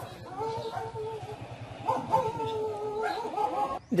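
A dog howling in two long, drawn-out calls, the second beginning about two seconds in.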